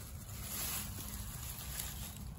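Faint rustling of grass being pushed aside by hand, over a low outdoor background hiss.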